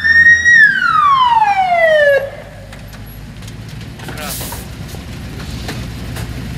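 A ZIL fire engine's siren wailing: it peaks just after the start, glides down in pitch for about a second and a half, and cuts off abruptly about two seconds in. After it the truck's engine runs steadily at a lower level.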